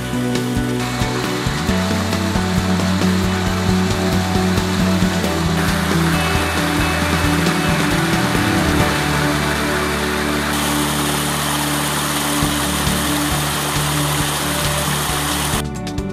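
Background music with long held tones over the even rushing of a small stream and waterfall. The water noise gets louder in steps and cuts off abruptly near the end.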